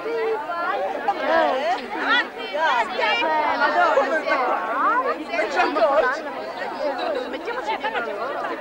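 Crowd chatter: many people talking at once, their voices overlapping into an unbroken babble.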